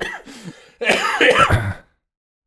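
A person's short, loud vocal noise about a second long, starting nearly a second in, cut off into dead silence.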